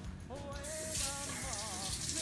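Kitchen faucet turned on about half a second in, then water running into a sink as lemons are rinsed under it. Over it a short melodic tune is heard, one pitched line that wavers up and down.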